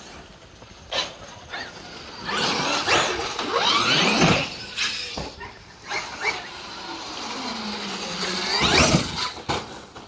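Brushless electric motor of a large Traxxas RC monster truck whining up in pitch as it accelerates hard, once around three to four seconds in and again near the nine-second mark, loudest on those runs.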